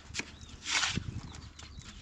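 Hand trowel working wet cement mortar onto a block wall: a short knock, then a brief scrape a little before the middle, and a few light taps.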